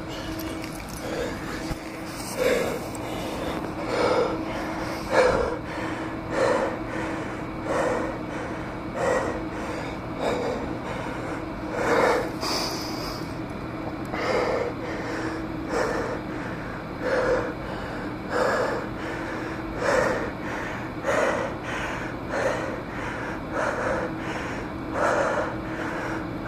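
A person panting hard, out of breath, close to the microphone: heavy, regular breaths about one every second and a quarter.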